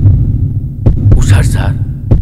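Deep, steady throbbing pulse in a film soundtrack, beating about two to three times a second like a heartbeat. A man's voice speaks a short word about one and a half seconds in.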